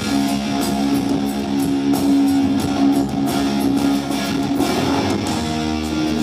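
Live hard rock band playing an instrumental passage: distorted electric guitar holding sustained chords over bass guitar, with cymbal hits from the drums.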